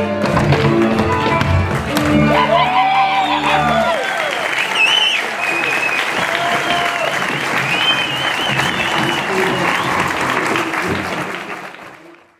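Folk band music accompanying a verbuňk dance, with deep bass notes, stops about four seconds in. Applause follows, with high voices calling over it, and fades out at the end.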